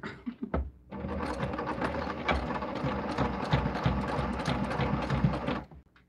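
Electric sewing machine stitching at a steady pace in one continuous run, starting about a second in and stopping just before the end, after a few clicks at the start.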